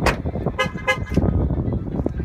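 Two short car-horn-like toots about a third of a second apart, just after a sharp knock at the start, over a low rumble.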